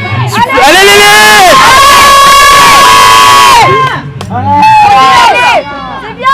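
Loud, high-pitched shouting of encouragement: one long drawn-out yell of about three seconds that overloads the recording, then a shorter shout near the end.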